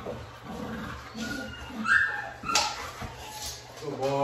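American Bully dog whining in a few short, high-pitched whimpers, with one sharp slap or knock a little past halfway.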